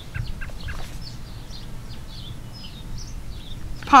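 Outdoor ambience: birds chirping faintly and irregularly over a low, steady rumble, with a few light clicks early on.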